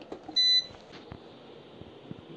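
A single short, high electronic beep from an LED facial light therapy device as its power switch on the back is pressed, with a faint click just before it.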